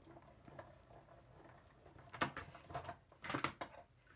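Hand-cranked Stamp and Cut and Emboss machine rolling an embossing folder and platform sandwich through its rollers. It is quiet at first, then in the second half comes a click and a few scraping, rubbing sounds.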